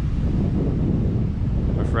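Wind buffeting the camera's microphone: a steady low rumble.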